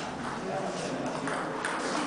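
Murmur of spectators' voices in a table tennis hall, with the light tap of a ping-pong ball bouncing between points.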